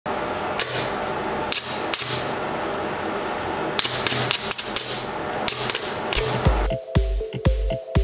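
High-voltage sparks arcing between two bolts: a steady hiss broken by sharp, irregular snaps. About six and a half seconds in, electronic dance music with a steady kick-drum beat takes over.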